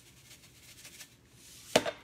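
Quiet kitchen handling while kosher salt is added to the dish: a few faint light ticks, then one sharp knock near the end.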